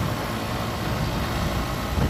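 Motorcycle riding at steady speed: the engine runs evenly under a constant rush of wind noise on the microphone.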